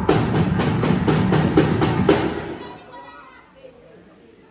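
Dance music driven by fast, even drumbeats, about four to five strikes a second, that stops abruptly about two and a half seconds in. Faint voices follow.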